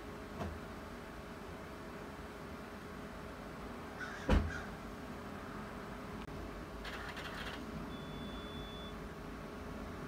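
Quiet room tone with a faint steady hum. A single sharp knock comes about four seconds in, a short noisy rasp around seven seconds, and a thin high tone lasting about a second near nine seconds.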